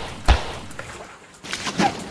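Two sharp thuds, about a second and a half apart, the second with a short cry.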